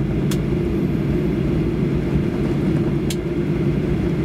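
Steady low rumble of a Boeing 737-800's cabin as the airliner taxis after landing, its CFM56 engines at idle. Two short sharp clicks come through, one just after the start and one near the end.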